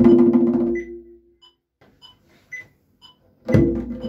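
Tombak (Persian goblet drum) played with hand strokes: the ringing strokes die away about a second in, leaving a pause with a few faint light ticks, and the playing starts again with a loud stroke near the end.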